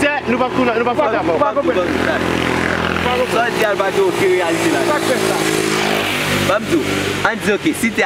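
A motorcycle engine passing close by, its note dropping in pitch as it goes past and fading out about six and a half seconds in.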